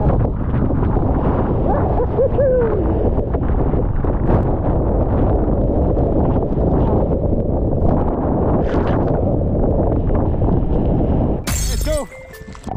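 Rough sea breaking and splashing against the hull of an outrigger fishing boat under way, with wind buffeting the microphone: a continuous heavy rush broken by sharper crashes of spray. Near the end it cuts off abruptly into music.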